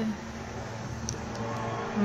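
Low, steady background rumble, growing a little louder in the second half.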